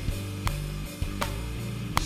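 Song playback with guitar and drums, overlaid by a DAW metronome click: three sharp clicks about three-quarters of a second apart. The click sits perfectly on the song's beat because it follows a tempo map detected from the song itself.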